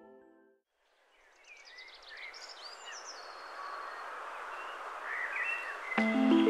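Outdoor ambience: after music fades to a moment of silence, a steady background hiss fades in with small birds chirping, a cluster of calls about two seconds in and again near the end.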